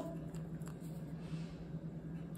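Faint handling of a small glass Avon Pro Gel nail polish bottle as its screw cap is turned off and the brush drawn out: a couple of soft clicks and a brief light rustle, over a steady low hum.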